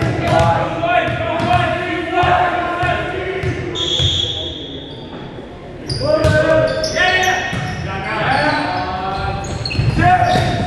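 Volleyball match in an echoing gym: players shouting and calling to each other, a short high whistle blast about four seconds in, then ball hits and renewed shouting as play starts about two seconds later.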